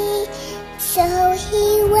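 A young girl singing a slow song with instrumental accompaniment, holding long notes that step between pitches.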